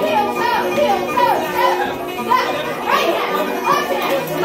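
Polka dance music playing under lively chatter and children's voices from the dancers.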